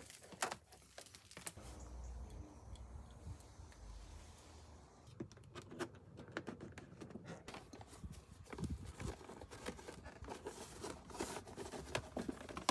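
Scattered small clicks, taps and rustles of hands handling a thin cable and small tools while fixing wiring along a car's door pillar and sill. A low rumble rises under them for a few seconds, between about two and five seconds in.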